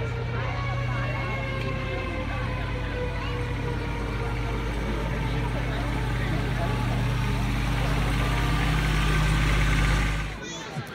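Engine of a side-by-side utility vehicle running steadily as it drives slowly past, growing louder toward the end as it comes close, with crowd chatter behind it.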